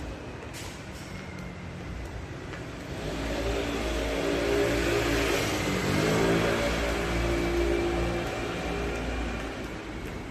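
A motor vehicle's engine passing by, growing louder for a few seconds with its pitch dropping as it goes past about six seconds in, then fading away.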